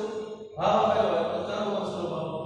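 A man's voice speaking with long, drawn-out vowels.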